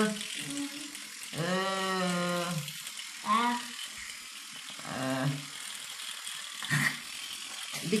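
A child's battery-powered electric toothbrush running in the mouth with a faint steady buzz, its battery run down. Long open-mouthed 'aah' voice sounds come over it, the longest about a second and a half in.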